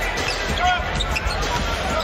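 A basketball being dribbled on a hardwood court, over a steady hum of arena crowd noise.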